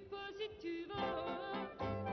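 A woman singing a slow French chanson with a band accompanying her, her held notes wavering with vibrato.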